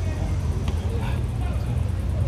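Outdoor city ambience: a steady low rumble of traffic with faint voices in the background.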